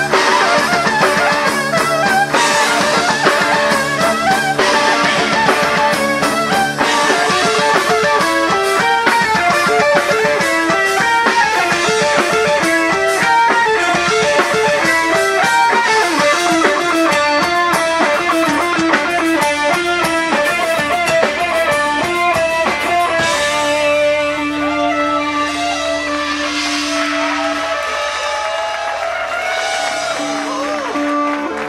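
Live rock band: electric guitar playing quick runs of notes over a drum kit. About 23 seconds in, the drums drop out and the music thins to a long held note and sliding pitches.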